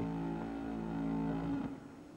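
A long, low, steady tone with a rich, horn-like quality, fading out near the end.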